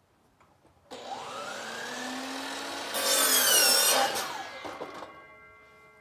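Chainsaw revving up about a second in, then cutting into the tree trunk, loudest and wavering in pitch around the middle. It eases off near the end and settles to steady tones.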